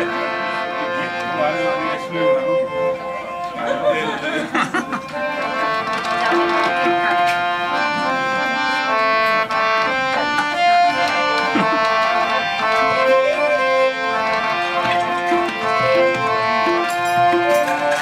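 Live Nepali folk music: a harmonium plays held, steady notes and a melody over hand-played tabla-style drums, with plucked strings in the mix.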